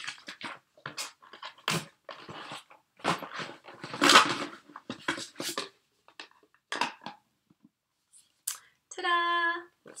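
Cardboard box and packaging being opened and handled to take out an essential-oil diffuser: a run of irregular rustling and scraping, loudest about four seconds in. Near the end, a dog gives one short, steady whine.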